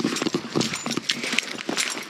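Footsteps on a sandy dirt trail: a quick, uneven run of short scuffing steps.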